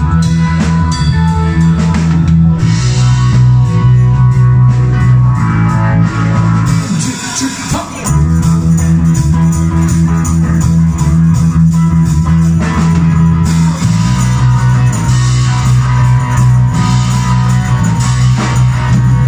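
Live rock band playing with electric guitars, bass guitar and drum kit. About six and a half seconds in, the bass and drums drop out for a second or so, then the full band comes back in.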